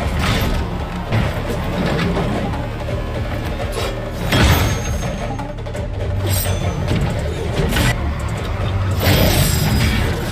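Dramatic soundtrack music under fight sound effects: crashes and impacts, the loudest hit about four and a half seconds in and another near the end.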